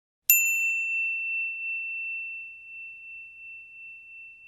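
A single bright bell ding, the notification-bell sound effect of a subscribe-button animation, struck once about a third of a second in and ringing on as one high tone that slowly fades.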